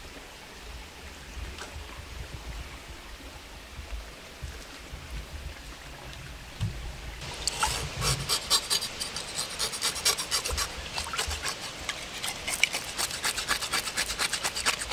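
A knife blade scraping the scales off a trout in quick, repeated rasping strokes, starting about halfway through, over the trickle of a stream.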